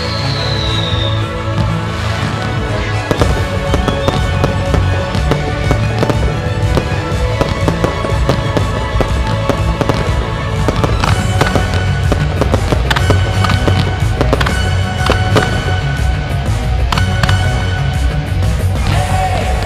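Aerial firework shells bursting in a rapid string of sharp bangs and crackles, the bangs coming thicker in the second half, over loud pop music with a steady beat.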